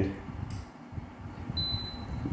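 A single short high electronic beep from the infrared heater's control panel near the end, as it registers a remote-control button press to raise the temperature setting. A brief click comes about half a second in, over a low steady background.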